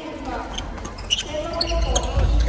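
Badminton players' court shoes squeaking and thudding on a wooden gym floor between points, mixed with players' voices.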